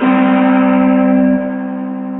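A musical chord struck loudly and left to ring, many notes sounding together. About a second and a half in, the lowest notes stop and the rest rings on more quietly.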